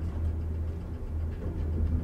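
Steady low rumble of a Hiss-Craft–modernized traction elevator car travelling upward, heard from inside the cab.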